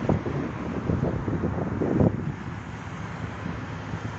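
Wind buffeting the phone's microphone with a fluctuating rumble, over the noise of road traffic, with stronger gusts near the start and about two seconds in.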